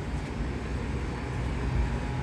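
Steady low hum and rumble of a commercial kitchen's ventilation hoods and running equipment.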